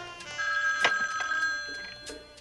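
A telephone bell rings once, a single ring lasting about a second.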